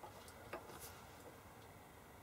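Faint clicks of a decade resistance box's rotary range switch being turned one position, one click right at the start and another about half a second in, over near silence.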